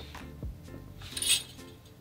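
Faint background music, with a brief light metallic clink and rustle of guitar string and tuner hardware being handled about a second in.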